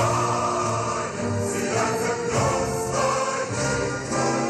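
Recorded choral music: a choir singing.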